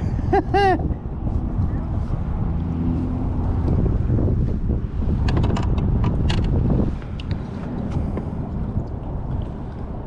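Low rumbling wind noise on the microphone, with a cluster of sharp clicks about halfway through as a clump of oyster shells caught on a fishing line is set down on the plastic kayak deck.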